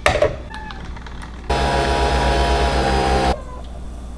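A knock as a milk-frother jug is lifted, then, about a second and a half in, the motor of a Nespresso coffee appliance whirring loudly with a pulsing hum for about two seconds before cutting off suddenly.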